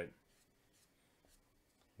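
Near silence, with the faint rubbing of a watercolour brush worked across wet paper.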